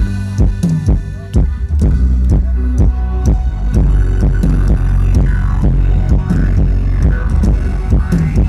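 Live band playing Thai ramwong dance music, with a heavy bass that dominates and a steady drum beat.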